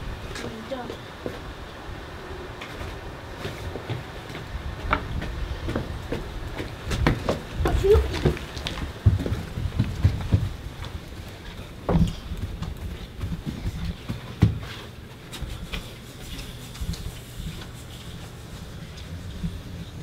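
Bumps, knocks and footsteps of a mattress being carried up a flight of stairs, with the heaviest thuds about seven to ten seconds in and again around twelve and fourteen seconds.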